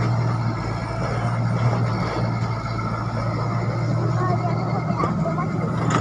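Komatsu crawler excavator's diesel engine running steadily as the machine digs, a constant low hum.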